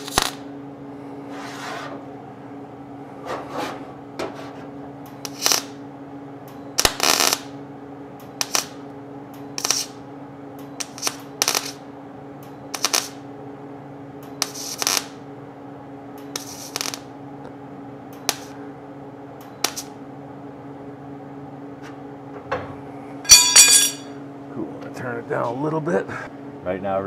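MIG welder laying short tack and stitch welds on a steel running board panel: repeated brief crackling bursts of the arc, a second or so apart, over a steady hum. The welds are kept short to hold the heat down so the thin panel doesn't warp. A louder ringing sound comes near the end.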